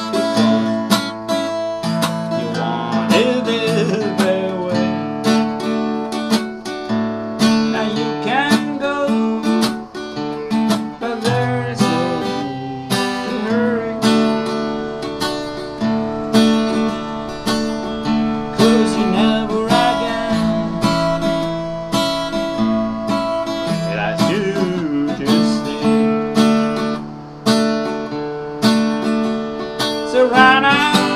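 Harley Benton GS Travel mahogany acoustic travel guitar in standard tuning, strummed in a steady rhythm through a run of chord changes.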